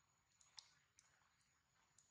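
Near silence, with a faint steady high whine and about five short faint clicks, the loudest a little over half a second in.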